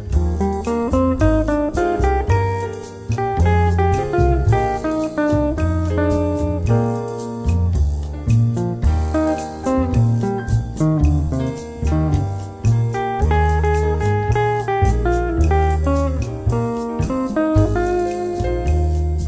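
Jazz duet of an Ibanez Artcore hollow-body electric guitar and a Yamaha CLP 270 digital piano: a single-note guitar melody line moving over piano chords and bass notes.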